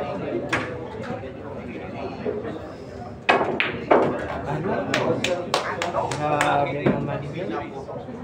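A pool cue tip strikes the cue ball with a single sharp click. A few seconds later comes a louder burst and then a quick run of sharp knocks, over the murmur of spectators' voices.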